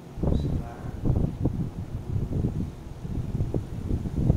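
Yellow colored pencil shading back and forth on a sheet of paper on a desk: a quick, uneven run of rubbing strokes, about three or four a second.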